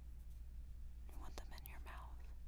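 A woman's faint breathy whisper about halfway through, with a few small mouth clicks, over a steady low hum.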